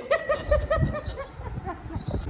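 Laughter: a quick run of short repeated laughs in the first second, trailing off after.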